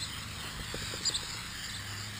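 Aerosol can of paint stripper spraying with a steady hiss, with a couple of short high bird chirps over it.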